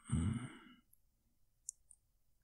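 A man sighing, one loud breathy exhale in the first second. Near the end come a few small, sharp wet mouth clicks.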